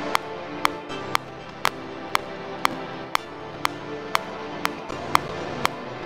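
Many layered Studio One 5 software-instrument tracks playing back together: sustained chords with a sharp click on every beat, about two a second. This is a CPU stress test, and the playback is crackling a little under the load, as the producer hears it.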